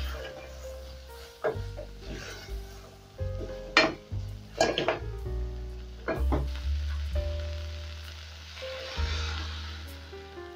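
Beef, capsicum and garlic sizzling in an aluminium pot while being stirred with a wooden spoon, the spoon knocking and scraping against the pot several times.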